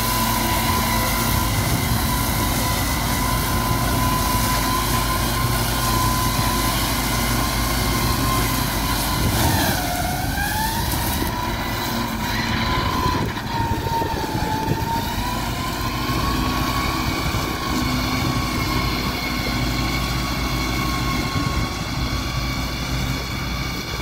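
Tractor-driven SaMASZ disc mower running, its spinning discs giving a steady whine over the tractor engine. The whine dips in pitch and recovers about ten seconds in, with a smaller dip a few seconds later.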